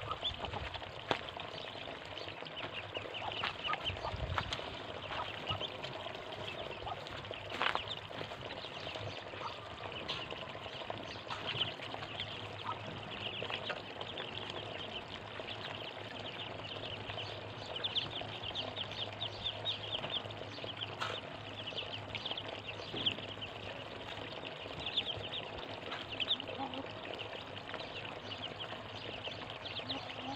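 A flock of Muscovy ducklings peeping continuously, many short high calls overlapping into a steady chorus, with a few sharp clicks mixed in.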